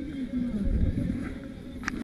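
Indistinct voices with wind rumbling on the microphone, and a short click near the end.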